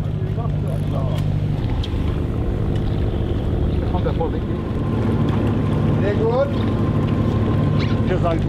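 Fishing cutter's engine running steadily, a low drone, with faint voices over it.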